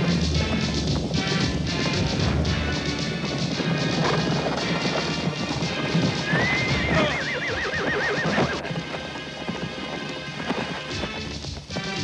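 Galloping horses' hoofbeats under film-score music, with a horse whinnying about six seconds in: one wavering cry lasting about two seconds.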